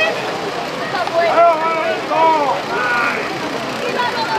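Indistinct voices of several people talking, over a steady rush of background noise.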